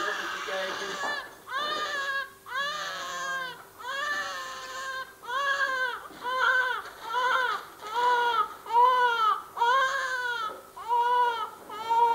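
Newborn baby crying: about a dozen short wailing cries, each rising and then falling in pitch, coming quicker and more evenly in the second half.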